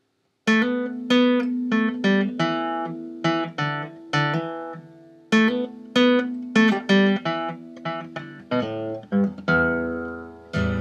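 Acoustic guitar played note by note, a repeating picked figure whose notes ring on into each other, starting about half a second in.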